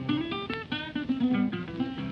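Background music: an acoustic guitar picking a quick run of single notes, with no singing.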